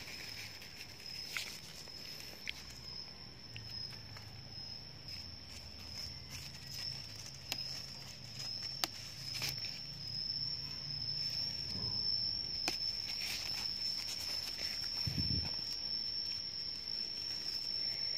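A continuous high-pitched insect trill, with scattered faint snaps and rustles as mulberry leaves are plucked off the branches by hand.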